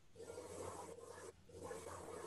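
Faint background hum and hiss from a participant's open microphone on a video call, cutting out for a moment just past the middle.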